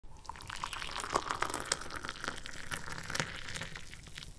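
Black tea poured into a glass tumbler, splashing and frothing with many small crackling pops as the glass fills. It eases off near the end.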